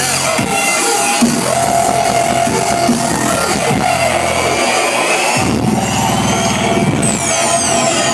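Loud dubstep from a live DJ set played over a club sound system. The deep bass cuts out briefly twice, and a few falling high-pitched sweeps come in near the end.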